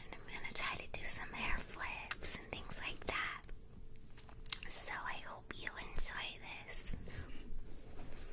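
A woman whispering in two stretches with a short pause in the middle, with a few short clicks in between.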